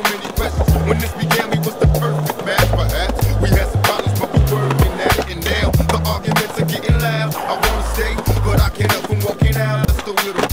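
Hip-hop backing track with a steady drum beat and a stepped bass line, over skateboard wheels rolling on concrete.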